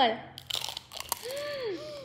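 Biting into fruit roll-ups wrapped around ice cream: a short noisy bite about half a second in, then a few muffled, rising-and-falling "mmm" hums through full mouths.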